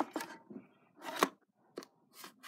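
Plastic CDs and DVDs clicking and scraping against one another as a loose pile of discs is handled: a few short clicks, the loudest a little past the middle.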